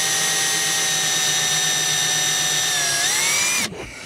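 Power drill with a 7/64-inch bit running steadily, boring a pilot hole into a plastic spray-paint cap. Near the end its whine dips in pitch, then rises as the bit comes free, and it stops suddenly.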